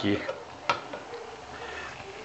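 A serving spoon knocks once against a cooking pot a little under a second in, with soft scraping as cooked lentils are spooned out.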